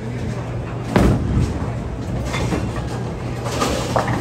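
Bowling ball released onto a wooden lane, landing with a sharp thud about a second in, then rolling down the lane with a steady low rumble over the clatter of the alley.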